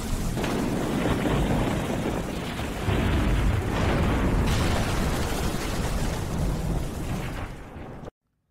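Thunderstorm sound effect: heavy rain hissing over a low thunder rumble, with a sudden louder thunder crash about three seconds in, easing off toward the end.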